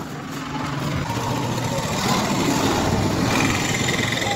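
Small vehicle engine running steadily, louder in the second half, with a thin high whine near the end.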